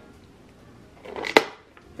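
A metal spoon scraping against a ceramic bowl and then knocking once sharply on it, about a second and a half in.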